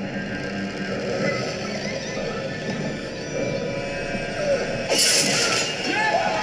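Horror film soundtrack playing from the screen: tense music, broken about five seconds in by a sudden, loud burst of noise lasting under a second.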